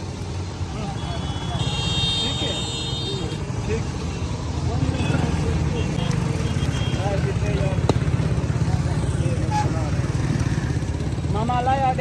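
Steady low rumble of motor traffic with voices talking in the background. A vehicle horn sounds for under two seconds about one and a half seconds in.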